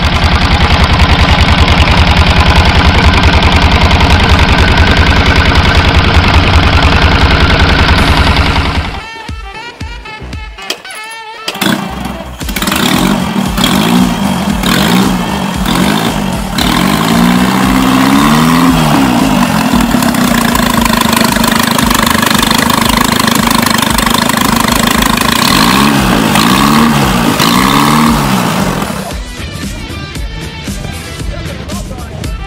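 Custom motorcycle engines running. A fast, even engine beat runs for about eight seconds, then after a short break a second engine idles and is revved up and down several times.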